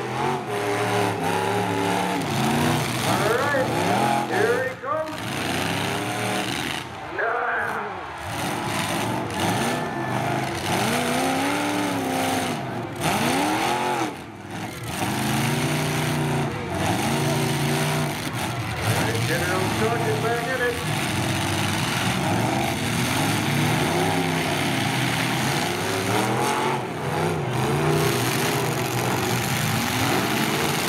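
Several demolition derby cars' engines revving hard over and over, their pitch rising and falling as the drivers spin their wheels in the mud and ram one another.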